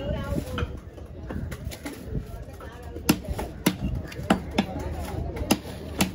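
A heavy knife chopping through trevally flesh and bone onto a wooden block: a run of sharp knocks, fainter at first and louder in the second half.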